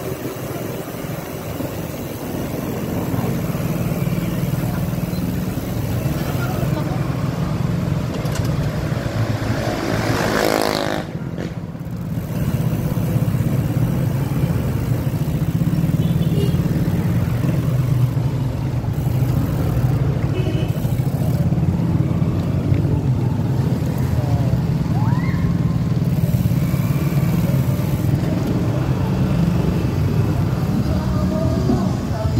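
Motorcycle engine running steadily while riding in slow traffic, with road noise. About ten seconds in there is a short rising whine, then the engine note dips for a moment and comes back stronger.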